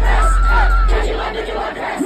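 Concert crowd shouting and cheering over heavy, steady bass from the sound system; the bass cuts out briefly near the end.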